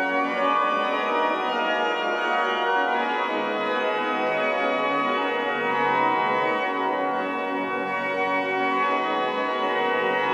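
The Cologne-built 1770s pipe organ of St. Stephen's Church, Nijmegen, rebuilt by Flentrop with three manuals and pedal, playing sustained full chords. A bass line on the pedals enters about three seconds in and steps downward. The wood-covered vaulted ceiling gives the organ a warm sound.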